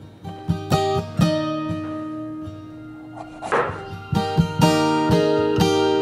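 Background music: acoustic guitar playing plucked notes and chords.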